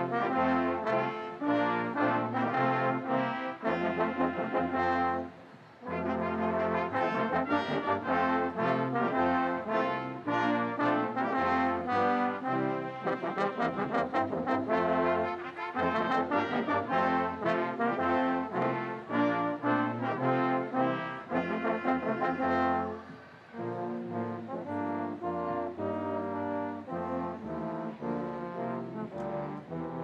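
Brass ensemble playing ceremonial music in held, stately chords, with a brief break about five seconds in and a softer passage from about two-thirds of the way through.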